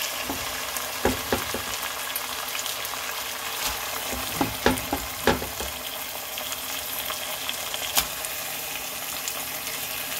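Marinated whole squid and minced garlic sizzling in hot oil in a stone-coated pot: a steady frying hiss with scattered sharp pops and knocks.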